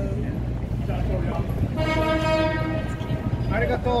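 A horn sounds once midway through: one steady, unwavering tone a little over a second long, over background chatter.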